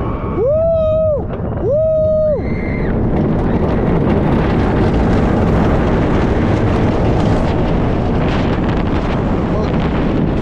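Two long, loud yells from a rider, then a heavy rush of wind buffeting the chest-mounted camera's microphone as the roller coaster train drops and runs at speed.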